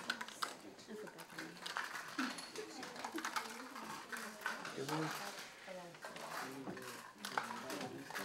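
Quiet classroom chatter: several students talking softly among themselves, with scattered small clicks and rattles of Skittles candies being handled and dropped into paper cups.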